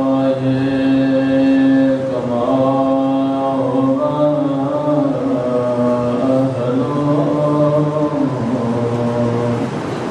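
A single unaccompanied man's voice chants a slow devotional recitation in long held notes, each lasting a second or two, stepping from pitch to pitch, with a brief break about two seconds in.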